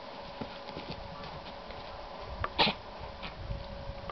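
A dog barks once, a short loud bark about two and a half seconds in, over light scuffling of two dogs playing.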